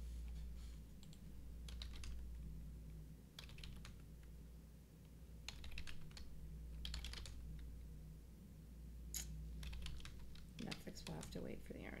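Computer keyboard keys tapped in several short bursts of a few strokes each, over a low steady hum.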